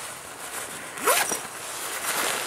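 A purse's zipper being pulled open in one short rasp about a second in, over a steady low background hiss.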